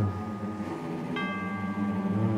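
Dramatic background music: a low sustained drone with a bell-like chime struck about a second in and left ringing.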